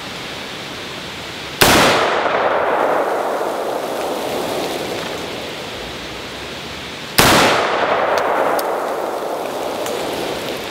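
Two rifle shots from a 10.3-inch-barrel AR-15 short-barreled rifle, about five and a half seconds apart, each a sharp report followed by a long fading echo. A steady hiss of wind in the trees runs underneath.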